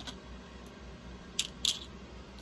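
Two short, crisp clicks about a quarter second apart, made by hands handling small craft pieces on a paper-covered work table.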